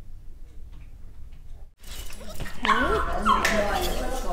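Small dog whimpering and yipping, starting about two and a half seconds in, after a stretch of faint room tone.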